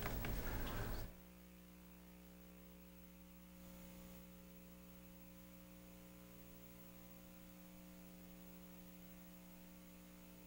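Steady electrical mains hum, low and unchanging, with several overtones. About a second in, a louder rush of noise cuts off suddenly, leaving only the hum.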